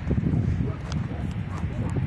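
Wind buffeting the microphone, an uneven low rumble with a few faint clicks.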